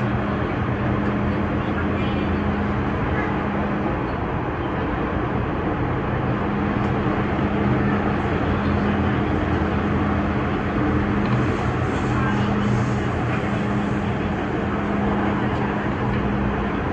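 Cabin noise of a Hong Kong MTR Disneyland Resort Line train running: a steady rumble of wheels on the track with a steady low hum from the drive equipment.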